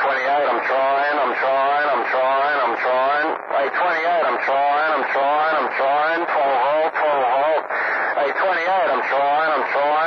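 A voice talking without pause through a CB radio's speaker, a station coming in over the air with the thin, narrow sound of a radio channel.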